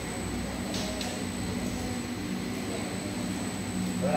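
Rice-noodle sheet coating machine running: a steady low mechanical drone and hum with a faint high whine, no change throughout.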